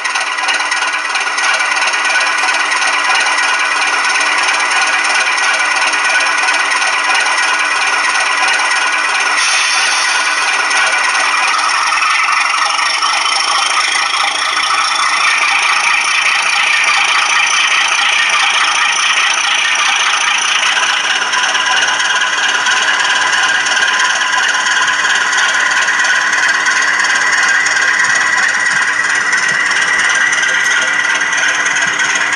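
Class 37 diesel locomotive engine sound from a model locomotive, running steadily, then building and rising in pitch from about a third of the way in as the locomotive moves off with its freight train.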